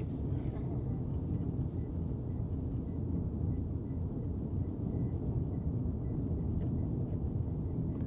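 Steady low road and tyre rumble inside the cabin of a moving Tesla Cybertruck, an electric pickup with no engine note.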